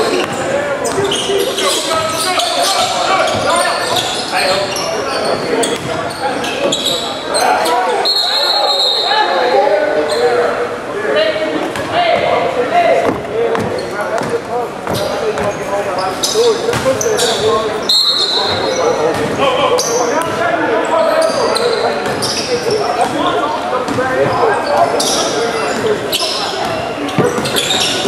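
Basketball being dribbled on a hardwood gym floor during live play, with players' voices echoing in the large hall and a couple of brief high-pitched squeaks.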